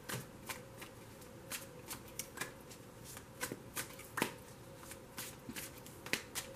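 A tarot deck being shuffled by hand: the cards give off irregular sharp clicks and snaps, the loudest about four seconds in.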